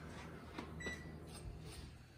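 Faint taps on an electric wall oven's control panel and one short high beep about a second in, as the oven temperature is turned up.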